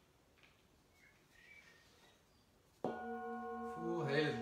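Metal singing bowl struck once about three seconds in, then ringing on with several steady tones that pulse slowly.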